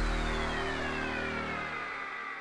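Electronic outro music fading out: held notes die away while a high tone glides steadily downward.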